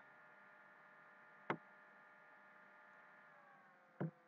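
Near silence with a faint steady hum, broken by a single sharp computer-mouse click about one and a half seconds in.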